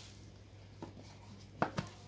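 Rigid cardboard phone box being set down and handled on a tile floor: quiet handling with a small knock a little under a second in and two sharper taps close together near the end.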